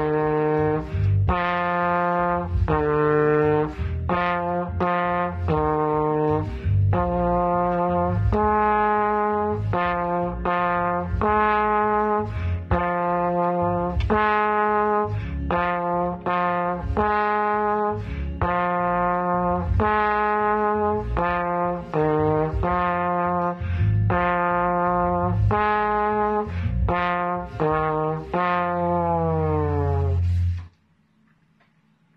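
Plastic trombone (pBone) playing a simple beginner's melody of separate, tongued notes, ending on a longer held note near the end that sags slightly in pitch.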